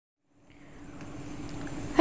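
A faint, steady hum with light hiss, fading in from silence about half a second in and growing slowly louder.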